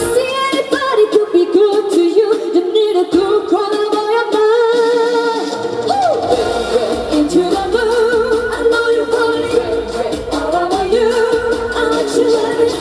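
Female pop vocal group singing live into microphones over loud amplified music, voices holding notes with vibrato. The bass and beat drop out at first and come back in about six seconds in.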